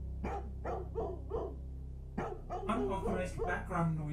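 A dog barking in the film's soundtrack over a steady low hum. There are four sharp barks in the first second and a half, then a quicker run of barks from about two seconds in.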